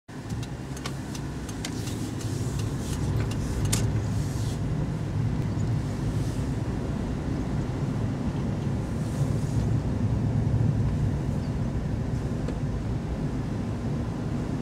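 Car engine and road noise heard from inside the cabin while driving, a steady low rumble that grows louder over the first couple of seconds. A few sharp clicks sound in the first four seconds.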